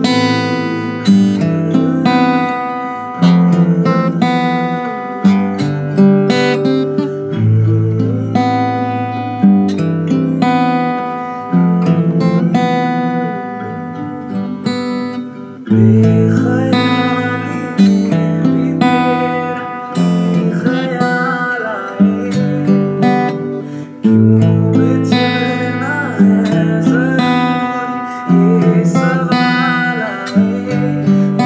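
Steel-string acoustic guitar played fingerstyle, picking arpeggiated minor-key chords (A minor, F, D minor, E) in a run-through of a song's progression. A strong new bass note and chord comes about every two seconds.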